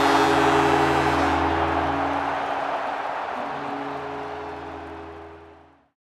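Closing music sting: a held chord under a loud hissing wash that fades out and ends just before six seconds in.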